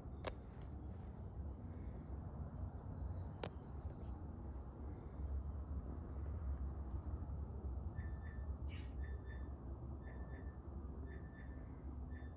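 Quiet room tone: a low steady hum with a few faint clicks, and faint short high-pitched tones in the last few seconds.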